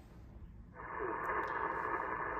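Steady hiss of 80-metre band noise from the receiver speaker of a Yaesu FT-890 HF transceiver, coming up about three-quarters of a second in and then holding.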